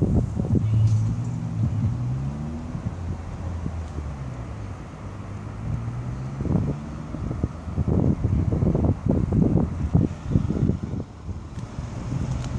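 Polaris Slingshot's four-cylinder engine driving past, its pitch rising in steps during the first few seconds as it accelerates. It is followed by irregular low rumbling in the second half.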